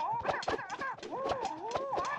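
A man's high-pitched, wavering yowling fight cries, the pitch sliding up and down, over quick sharp swishes and clacks of spinning nunchaku.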